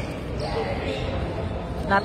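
A basketball bouncing on a hardwood gym court, with voices in the background.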